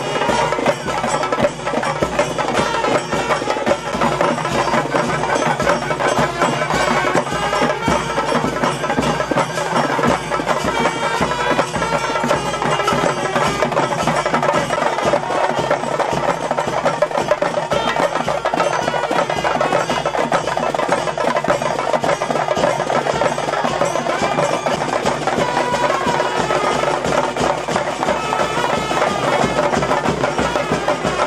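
Traditional music played without a break: fast, dense percussion with a pitched wind melody over it.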